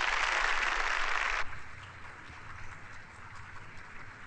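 Large audience applauding, loud and dense for about a second and a half, then dropping suddenly to a quieter, duller applause, as heard through a small television set.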